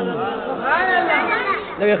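A man's chanting voice: a long held sung note breaks off with a falling glide at the start, then softer, overlapping speech-like voices follow until the chant picks up again with 'ya' near the end.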